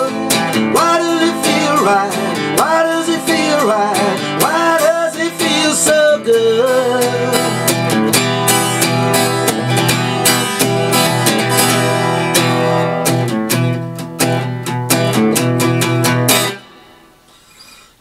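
Acoustic guitar strummed, alternating two chords, E minor and A minor 7, with held wordless sung notes over the first six seconds. The strumming stops abruptly about sixteen seconds in, ending the song, and only a faint ring is left.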